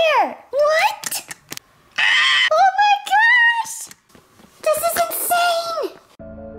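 Children's high-pitched wordless exclamations, a few drawn-out cries that slide up and down in pitch, with a breathy burst in the middle and the last cry falling away at the end.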